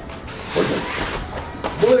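A man being taken down onto foam floor mats: scuffling of martial-arts uniforms and a dull landing on the foam, with a man's voice starting just before the end.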